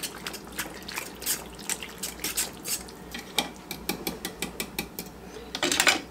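Metal spoon stirring thick tomato soup in a pan, clinking and scraping against the dish several times a second, with a louder run of clinks near the end.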